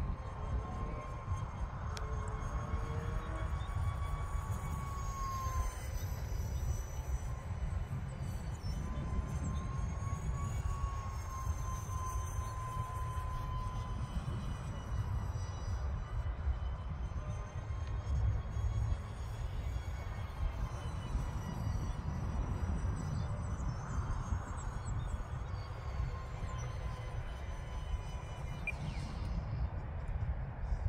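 Whine of an E-flite UMX A-10's twin electric ducted fans as the model jet flies overhead, its pitch gently rising and falling. Wind buffets the microphone with a steady low rumble.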